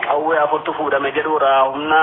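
Speech only: a voice talking without a break, with the thin, narrow sound of a radio broadcast.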